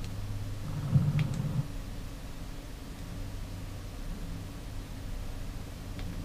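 A low steady hum, with a slightly louder low rumble for under a second about a second in.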